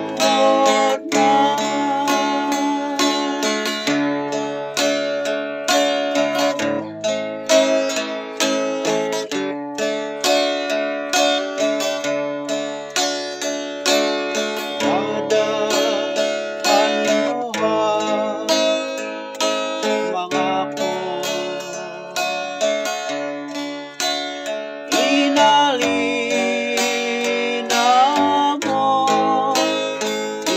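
A man singing a Christian song in Ifugao, accompanying himself on a strummed acoustic guitar.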